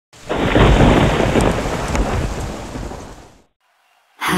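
A long roll of thunder with rain, rumbling deepest in the low end, loudest in the first second or so and dying away about three and a half seconds in.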